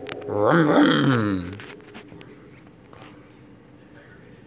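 A drawn-out voice-like call about a second long, rising then falling in pitch, over the faint steady hum of a running Igloo countertop ice maker.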